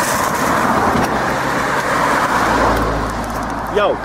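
A car driving past close by: a rush of tyre and engine noise, loudest in the first second or so, then easing off into a low rumble.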